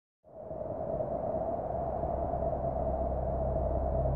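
A sustained drone from a horror-style opening score fades in about a quarter second in and grows slowly louder: one steady middle tone held over a deep low hum.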